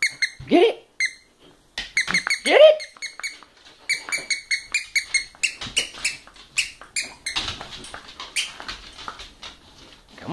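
A dog's squeaky toy squeezed over and over in short high squeaks, several a second at its fastest, with two louder rising voice-like sounds in the first three seconds and a rougher scuffling noise under the squeaks near the end.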